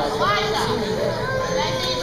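Children's voices chattering and calling out over one another at an indoor swimming pool.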